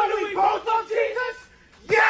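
A woman's voice making high-pitched wordless cries in short bursts, then a loud shriek that falls in pitch near the end.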